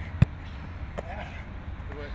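A single sharp thud about a quarter of a second in, a hit in a football contact drill, then a fainter knock about a second in.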